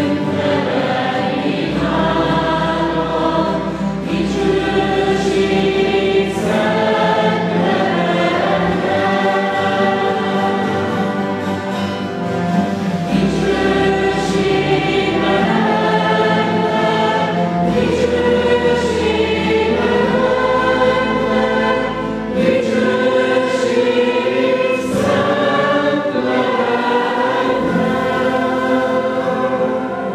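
Several voices singing a hymn in phrases of a few seconds each, accompanied by acoustic guitars.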